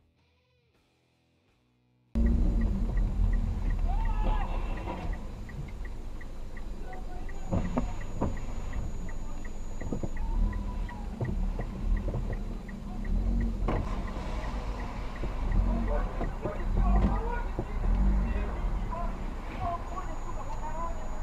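Near silence, then about two seconds in a car's engine and road rumble cut in, heard from inside the cabin. A steady light ticking runs through it until about halfway, and muffled men's voices come and go over it.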